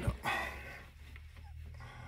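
A man getting up from a leather office chair: a sharp click right at the start, then a short breathy rustle of effort and cloth. A low room hum continues underneath.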